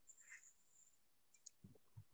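Near silence in a video-call audio feed, with a few faint clicks near the end.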